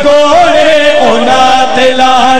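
A man chanting a qasida in a loud voice through a microphone, holding long notes that waver and slide between pitches.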